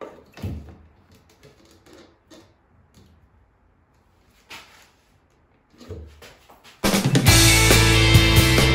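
A few soft knocks and rustles as a hand works inside a cut-out in a drywall ceiling, handling the cable in the joist cavity. Near the end, loud rock music with a drum kit starts and covers everything.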